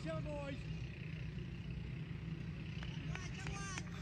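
Voices of players and onlookers calling across the field, heard at the start and again near the end, over a steady low rumble, with a few sharp clicks.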